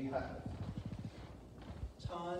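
Footsteps crossing a wooden floor, heard as a quick run of low knocks that starts about half a second in.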